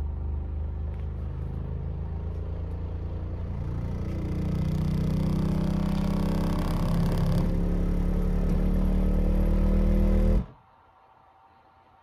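An Earthquake Tremor X124 subwoofer running in free air at rated power, playing a very deep test-tone sweep that rises in pitch from about 20 Hz. It makes a deep hum with a buzz of higher overtones and grows louder, then cuts off suddenly about ten seconds in.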